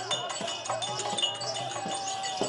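Terukoothu street-theatre accompaniment: quick drum strokes and metallic jingling, with one long held note coming in a little past a third of the way through.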